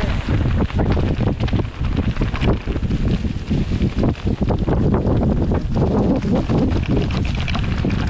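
Wind buffeting the microphone over the sound of a steel hardtail mountain bike descending fast: tyres rolling over loose stones and dry leaves, with a dense clatter of small knocks and rattles from the bike.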